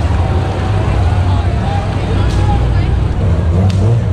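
Low, steady engine rumble from sports cars, a white Audi R8 and then a Nissan GT-R, rolling slowly past at parade pace, over crowd chatter.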